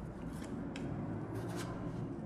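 Quiet, steady low room hum with a few faint short clicks scattered through it.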